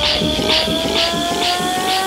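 Trance music in a build: a synth tone with harmonics sweeps slowly upward over a steady hi-hat pattern, about two hits a second, with the deep bass dropped out.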